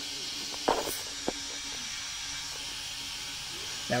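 Steady background hiss, with a brief noise a little under a second in and a single click shortly after.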